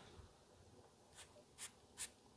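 Perfume atomizer spraying onto a paper scent strip: short, faint hissing puffs in the second half, the middle one loudest.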